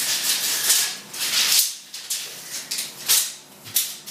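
Steel tape measure being pulled out and handled, its blade rasping and rattling in several bursts. Two sharp clicks come near the end.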